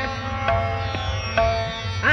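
Tanpura drone in a Hindustani classical recital: strings plucked one after another and left ringing in a pause between sung phrases.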